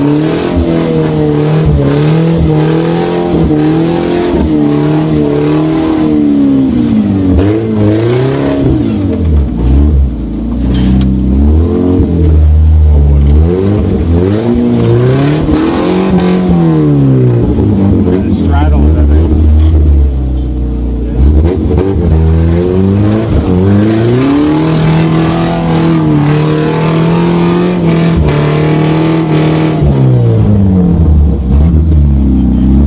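An off-road 4x4's engine, heard from the open roll-caged cab, revving up and down over and over as the vehicle works its way over rough trail and up a slope, with a few steadier stretches between the revs.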